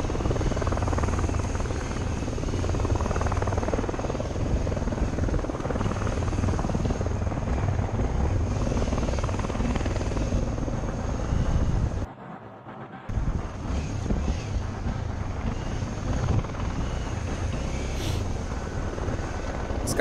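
Motorcycle running over rough pasture, its engine mixed with wind buffeting on the rider-mounted camera, steady throughout. The sound drops out for about a second about twelve seconds in.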